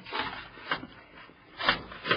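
A metal PC power supply unit being lowered into a steel computer case, scraping and knocking against the chassis in a few short bursts, the loudest clunk near the end.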